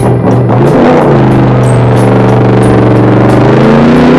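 Cartoon motorcycle engine sound effect, loud, with music behind it. The engine note drops in pitch during the first second, holds steady, then rises again near the end like a rev.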